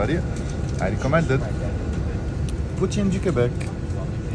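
A voice speaking in short phrases over a steady low rumble of a bus's engine.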